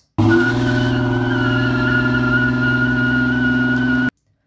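A car's driven rear tyre spinning in place without grip, giving a steady squeal over the engine held at high revs. It starts suddenly just after the beginning and cuts off abruptly at the end.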